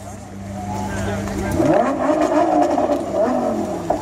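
Lamborghini Gallardo's V10 idling, then revved up and down several times from about a second and a half in.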